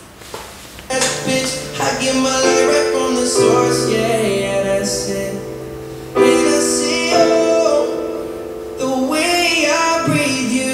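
A male pop singer's voice over held electric keyboard chords, in a solo voice-and-keyboard live arrangement; the music swells in about a second in.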